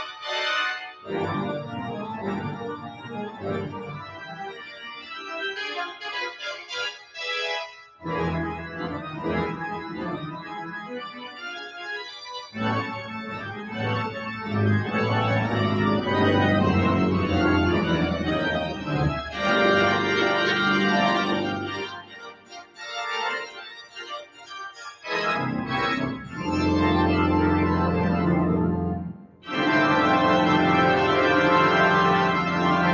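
Visser-Rowland pipe organ played solo: sustained full chords over deep pedal bass notes, in phrases separated by brief pauses.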